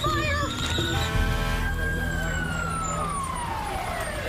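Fire engine siren: one long wail that starts about a second in, rises a little, then falls steadily in pitch.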